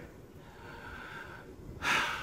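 A man breathing audibly between sentences: a faint, drawn-out breath, then a sharper intake of breath near the end.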